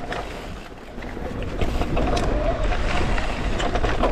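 Electric mountain bike ridden fast down a dirt forest trail: wind rumbling on the camera's microphone, tyres and frame rattling and clicking over roots and rocks, and a faint wavering whine from the assist motor. It gets louder about a second and a half in as the bike picks up speed.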